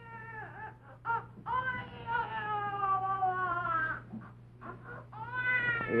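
Long, pitched crying wails from the sketch's baby: a short cry at the start, a second brief one, then a long cry of about two and a half seconds that slowly falls in pitch, and another cry rising near the end. A steady low hum runs underneath.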